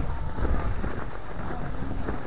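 Strong wind buffeting the microphone: an uneven, low rumble.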